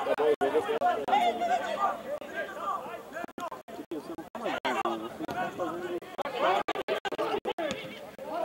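People chatting, their words not clear, with brief dropouts in the sound.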